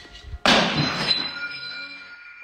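A sudden loud crash about half a second in, as of something being struck or smashed, followed by a ringing tail that fades over the next second or so.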